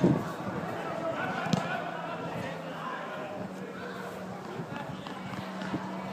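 Indistinct shouts and calls of football players on an artificial-turf pitch, with a sharp thump about a second and a half in, like a ball being kicked. A faint steady low hum runs through the second half.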